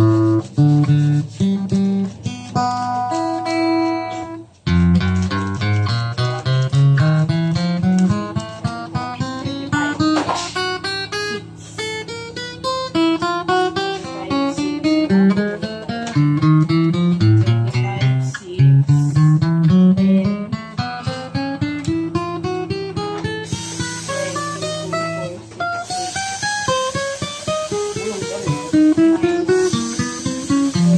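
Acoustic guitar played one note at a time, stepping up the neck fret by fret in several rising runs, to check for dead notes; every note sounds, none dead.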